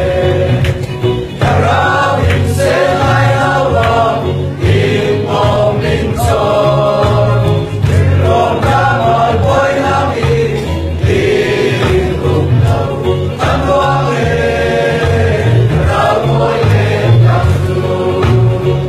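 A mixed choir of men and women sings a Chin-language gospel praise song, with low accompaniment notes moving beneath the voices.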